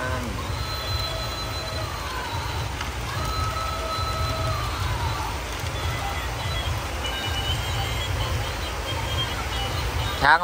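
Battery-operated walking toy elephant playing a simple electronic tune, with a steady low rumble underneath.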